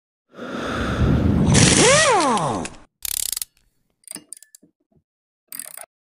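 Intro sound effect of mechanical noise: a loud stretch in which a whine rises briefly and falls away about two seconds in, then a few short bursts and clicks.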